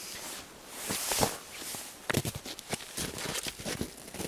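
Footsteps crunching through snow, with rustling against brush as a person walks up and steps in: a longer scuffing swell just after a second in, then a run of short, uneven crunches.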